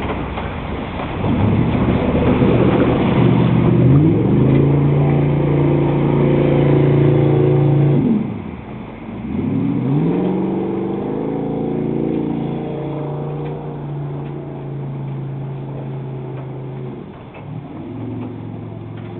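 Personal watercraft engine revving up and running at a steady high pitch, falling away about eight seconds in, then revving back up and holding steady, with a brief dip near the end.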